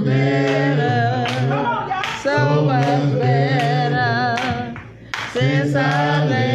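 Unaccompanied singing voice holding long notes with vibrato in slow phrases, with short breaks about two and five seconds in.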